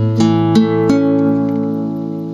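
Classical nylon-string guitar played as a slow broken chord: about four strings plucked one after another from the D string upward within the first second, then left to ring and slowly fade. The chord is a partly fingered G major, a beginner's step toward the full G-major chord.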